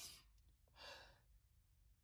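A woman's faint breathing: a short breath right at the start, then a sigh about a second in, with near silence otherwise.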